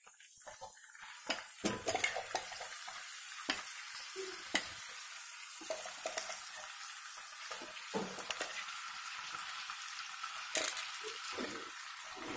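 Onion paste sizzling in hot oil in a metal kadai: a steady frying hiss that starts about half a second in, as the paste hits the oil. Sharp clinks and scrapes of the spatula and bowl against the pan break in now and then as the paste is stirred.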